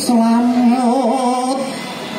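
A single voice sings one long, slightly wavering held note in the manner of a Javanese ceremonial chant. It starts with a short breathy hiss and fades a little toward the end.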